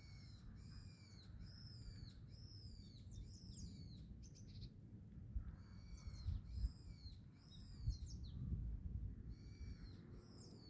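A small bird calling: quick runs of short, high, downslurred calls, one run in the first few seconds and another in the second half. A low rumble sits underneath and swells in the second half.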